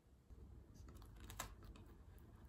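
Faint typing on a computer keyboard: a few scattered soft key clicks over a low hum, the sharpest about one and a half seconds in.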